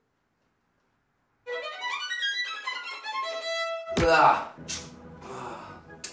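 After a second and a half of silence, a violin plays a fast run of short, separate notes: up-bow staccato practice. The run breaks off about four seconds in with a sharp knock, and rougher, noisier sound follows.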